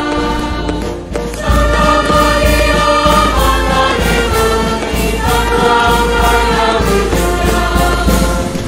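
Music: a choir singing with instrumental backing over a steady deep bass, dropping away briefly about a second in before resuming.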